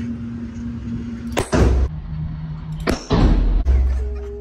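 Two shots from a large-frame revolver, about a second and a half apart, each a sharp loud blast followed by a heavy low boom and reverberation off the walls of an indoor range.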